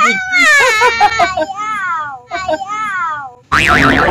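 A young girl laughing and squealing in high-pitched peals that slide up and down, then a sudden loud burst of noise near the end.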